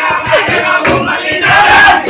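A group of men shouting and chanting loudly together, their voices rising and falling, over devotional music.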